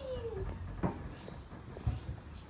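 Soft knocks and thumps of a person doing an egg roll across a thin blanket on a wooden floor, two light knocks about a second apart, opening with a brief falling sound of voice.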